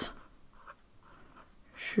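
Fine-tipped pen writing on lined notepad paper: faint, soft scratching strokes.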